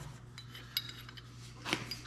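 A few light metallic clinks, one near the middle and a sharper one near the end, as a threaded metal pipe tee is turned onto a pipe held in a bench vise. A faint steady hum lies underneath.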